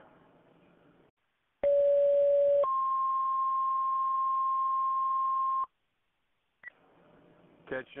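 Fire dispatch two-tone alert over a radio scanner: a steady lower tone for about a second, then a higher tone held for about three seconds and cut off abruptly, the page that calls the assigned fire units out before the dispatch is read. Brief radio hiss and a click come before and after the tones.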